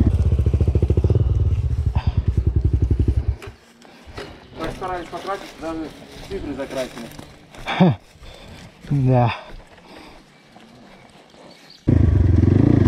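Enduro motorcycle engine idling with an even, low pulse, cut off abruptly about three and a half seconds in. After that it is much quieter, with faint bits of voices.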